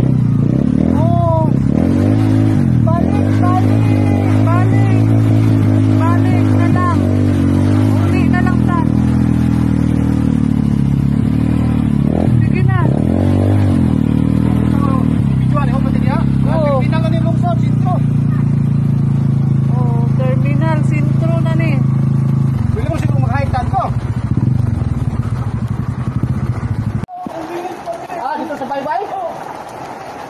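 Small motorcycle-type engine running under load while the vehicle is driven, its pitch dropping and rising again several times as it slows and picks up speed. The engine sound cuts off abruptly near the end.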